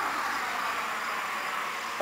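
A steady rushing noise that swells and then eases off, with faint insect chirping behind it.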